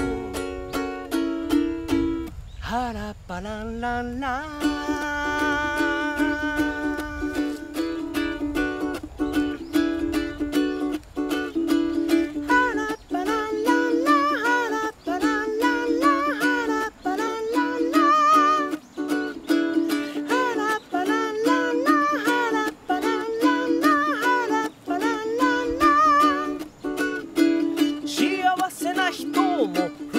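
Ukulele strummed in a steady rhythm while a man sings along, his voice swooping in pitch a few seconds in.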